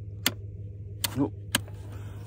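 Toggle switches on an ice fishing rig's control box being flipped: three sharp clicks within about a second and a half, over a steady low hum.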